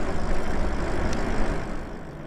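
Wind rushing over the microphone, with tyre and road noise from an e-bike riding along a paved street: a steady low rumbling hiss that eases off somewhat near the end.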